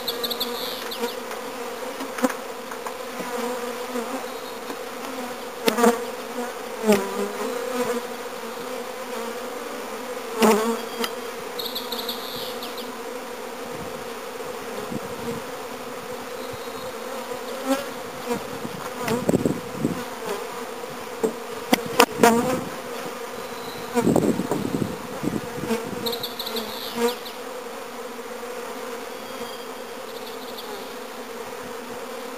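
Many honeybees buzzing in a steady hum around a freshly stocked hive, with scattered knocks and scrapes as wooden hive boxes and the cover are set in place, a cluster of them in the second half.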